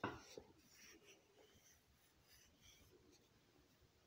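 Near silence: room tone, with a faint brief sound right at the start.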